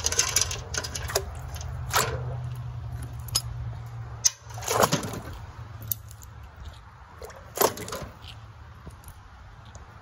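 Rusty steel foothold traps and their chains clanking and rattling as they are handled and lowered into a metal pot of water, with water sloshing as a trap goes in. There are sharp metallic knocks every second or so.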